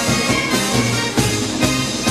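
Brass band playing a marinera norteña, a steady, lively dance rhythm with repeated bass notes under the horns.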